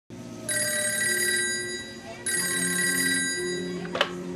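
A telephone ringing twice, each ring lasting about one and a half seconds with a short pause between.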